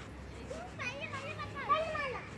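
Children's high-pitched voices calling out and chattering at play, starting about a second in and loudest near the end.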